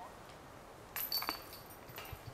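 A disc golf disc tapped into a metal chain basket: a sudden metallic clank about a second in, then a short ringing jangle of metal.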